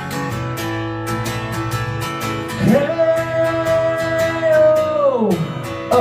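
Acoustic guitar strummed steadily, with a male voice singing one long held note from a little under three seconds in, sliding up into it and falling away near the end.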